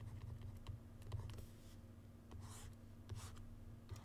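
Stylus tip tapping and scraping on a graphics tablet during handwriting: light clicks at first, then a few longer scratchy strokes as lines are drawn.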